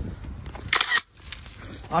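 Wind rumbling on a phone microphone during a bicycle ride, with a short, sharp hiss-like burst just under a second in. At about one second the sound drops away abruptly to a quieter background.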